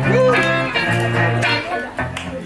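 Live bluesy rock band in an instrumental stretch: electric guitar lead over steady bass notes and drums, with one guitar note bent up and back down near the start.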